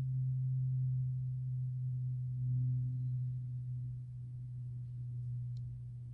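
A steady low-pitched hum-like tone with a faint overtone, slowly fading.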